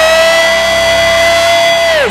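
A man's voice holding one long, high, shouted note, gliding up into it and held steady for about two seconds before dropping off at the end.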